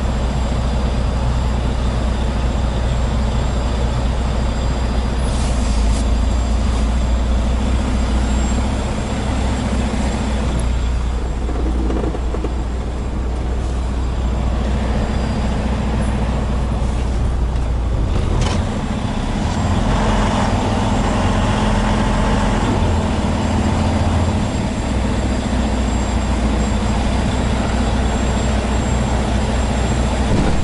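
Semi truck's diesel engine running, heard from inside the cab as a steady low drone. Its note changes about two-thirds of the way through as the truck manoeuvres.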